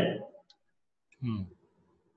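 A single faint computer mouse click, clicking into a text box on screen, between the trailing end of a man's speech and a brief murmur.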